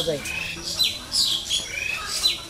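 Birds chirping repeatedly: short, high sweeping notes, mostly falling in pitch, about two or three a second.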